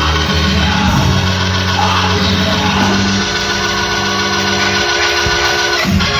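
Live church band music, loud and steady, with held chords over a deep bass line and a voice singing over it.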